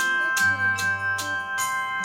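Slow improvised music: a rack of hanging metal plates is struck in a loose run of ringing tones that sustain and overlap, over low notes from an acoustic guitar.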